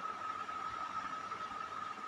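Faint steady background hiss with a thin, unchanging high-pitched tone running through it: room noise picked up by the recording.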